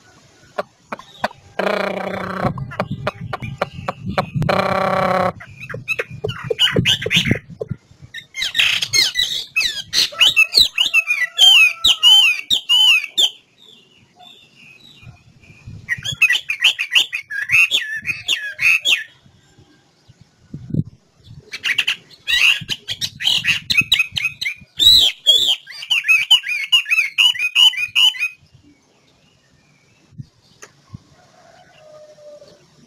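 Chinese hwamei (melodious laughingthrush) singing: three loud bursts of rapid, varied whistled phrases, each several seconds long with short pauses between. Near the start, two short buzzy calls come before the song.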